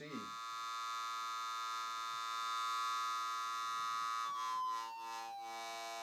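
Hard-synced triangle wave from a Doepfer VCO: a steady synthesizer tone with many overtones. About four seconds in, one of the upper overtones glides downward. The sound has two parts, a strong flanging-like effect and the edge added by the sync flank in the waveform.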